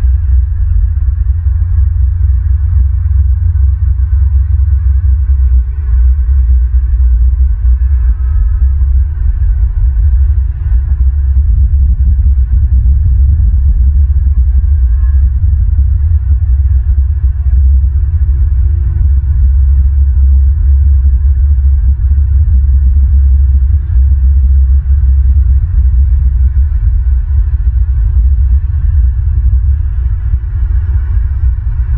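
Wind buffeting an outdoor camera microphone: a loud, steady low rumble that flutters unevenly and thickens a little after about twelve seconds.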